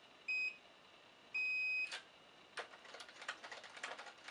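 An electronic fingerprint keypad door lock beeps: first a short beep, then a longer one, as a newly enrolled fingerprint is read and accepted to unlock. A click follows, then a run of light mechanical clicks as the lock's metal lever handle is pressed down.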